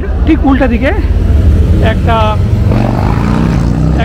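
A car driving past on the street, its engine note rising in the second half over a steady low traffic rumble. Voices speak briefly in the first half.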